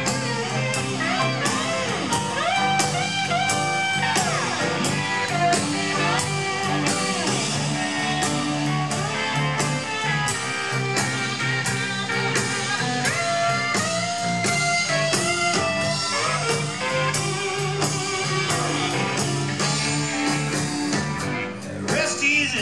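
Live blues band playing an instrumental break: a lead electric guitar with bent notes over bass, drums and keyboards, keeping a steady beat.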